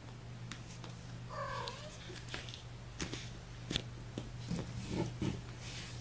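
A young kitten, about four weeks old, gives one short mew about a second and a half in. A few soft clicks follow.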